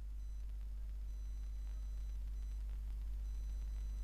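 Room tone: a steady low hum with a few faint, thin high-pitched tones and no other sound.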